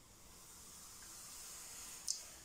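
Faint steady hiss from a pot heating on the stove, growing slowly louder over a couple of seconds.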